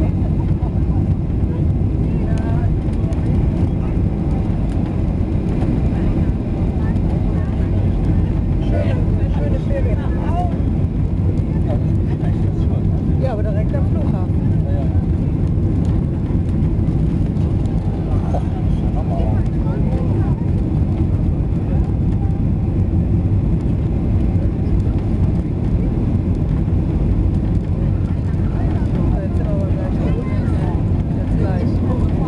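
Boeing 737 cabin noise on final approach, heard from a window seat: a steady, loud low rumble of the jet engines and airflow over the fuselage.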